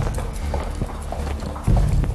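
Footsteps on a hard floor, a few sharp steps over a low steady hum and faint music.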